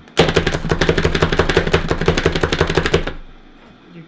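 Manual food chopper mincing fresh ginger, pressed down by hand: a loud, fast run of sharp clacks lasting about three seconds, then stopping.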